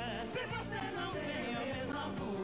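Live duet singing over a band accompaniment, the voice sliding between held notes with no clear words.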